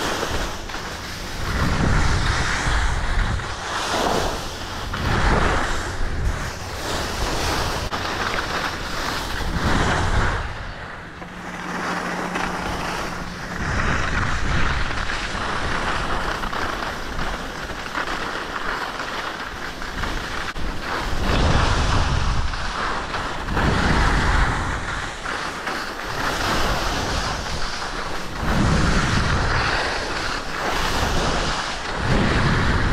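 Wind rushing over an action camera's microphone during a downhill ski run, with skis sliding and scraping over packed snow, swelling and easing every couple of seconds with the turns.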